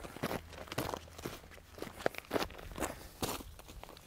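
Footsteps on dry, stony dirt, an irregular series of short crunching steps, a few each second.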